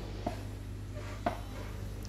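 Electric foot massager running in an automatic programme: a steady low hum from its motor, with two faint clicks about a second apart.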